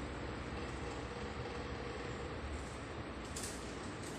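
A colour pencil rubbing on worksheet paper over a steady background hiss, with a brief scratchy stroke about three and a half seconds in.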